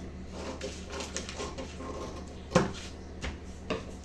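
Paper pattern sheets being handled and rustled on a table, with a sharp click about two and a half seconds in and a smaller one near the end.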